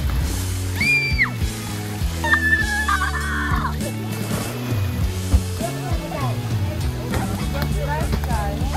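Background music with a steady low beat, with brief high-pitched children's shouts about a second in and again around two to three seconds in.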